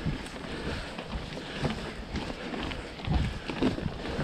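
YT Jeffsy mountain bike climbing over a loose stony trail: tyres crunching on gravel and stones with scattered clicks, knocks and rattles from the bike, the knocks growing louder about three seconds in.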